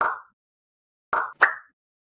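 Three short, bright pop sound effects: one at the start and two in quick succession about a second later, with dead silence between them. They mark animated icons popping onto an end card.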